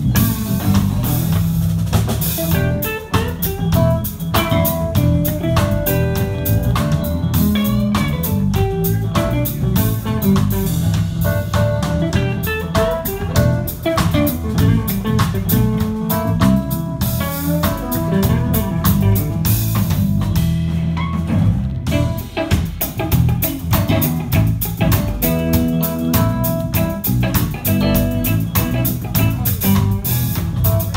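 Live band playing: electric guitar, electric bass, keyboard and drum kit together in a steady groove.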